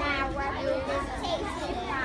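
Many children talking over one another in a classroom: indistinct overlapping chatter of young voices, with no single speaker standing out.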